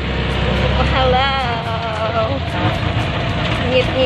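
Engine and road noise of a moving open-sided passenger vehicle, heard from inside the cab, with a voice calling out about a second in and again near the end.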